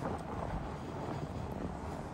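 Steady rush of wind on the microphone mixed with the rolling noise of a Surly Ice Cream Truck fat bike riding along a sandy trail.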